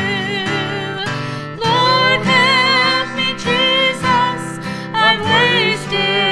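A woman singing a gospel song over a strummed acoustic guitar. She holds a wavering note that ends about a second in, pauses briefly, then sings on while the guitar keeps strumming.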